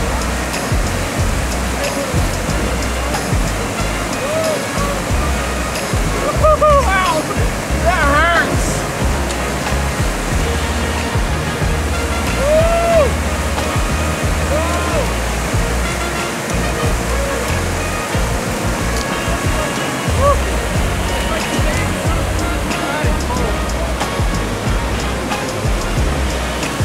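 Swollen mountain creek (Mill Creek) rushing steadily over rocks in white water, running unusually high after flooding.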